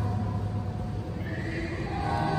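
A girls' choir singing softly, holding a low note that fades out about halfway through as a higher note comes in.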